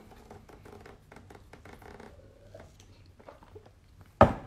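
Quiet room with faint, scattered small clicks and rustles of handling noise, and a low hum underneath.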